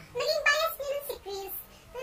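A high-pitched voice in short sing-song phrases, with a brief pause near the end.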